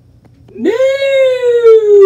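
A person's voice holding one long, loud wail that starts about half a second in and slides slowly down in pitch.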